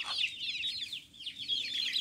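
A brood of chicks peeping continuously: many short, high-pitched, falling peeps overlap one another.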